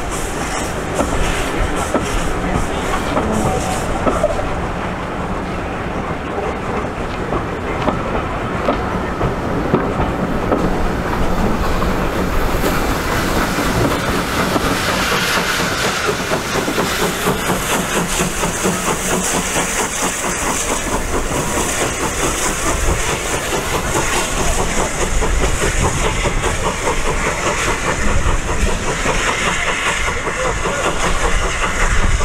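Passenger carriages of a steam-hauled train rolling past, their wheels clicking over the rail joints in a steady clatter, with a faint hiss of steam from the locomotive.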